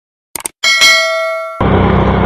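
Subscribe-button sound effect: two quick mouse-like clicks, then a bright bell ding that rings on for about a second. About one and a half seconds in it cuts suddenly to the steady engine and road noise of a moving motorcycle.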